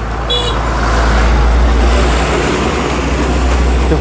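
Outdoor traffic noise: a steady, loud rush with a deep rumble underneath, and a brief high-pitched toot about a third of a second in.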